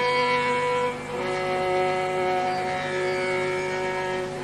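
Carnatic concert music in raga Pantuvarali: a melodic line of long held notes over a steady drone, shifting to new notes about a second in.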